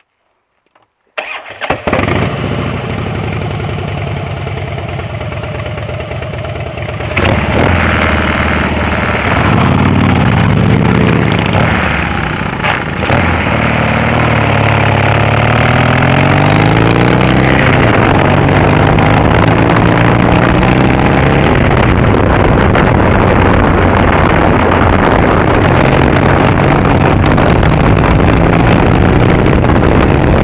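Triumph Bonneville parallel-twin engine starting about a second in and idling, then revving harder about seven seconds in as the bike pulls away. It accelerates in several rising runs as it shifts up through the gears, then settles into a steady cruise.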